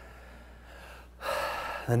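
Quiet room tone with a steady low hum. A little over a second in comes a man's audible in-breath, close to the microphone, lasting about half a second, just before he speaks again.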